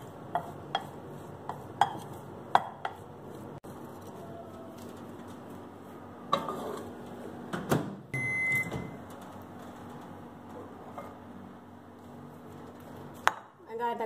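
A spoon clinking and scraping in a glass mixing bowl, then knocks as the bowl goes into a Samsung microwave oven and one short electronic beep from the microwave just after the middle as it is set running. A sharp click near the end.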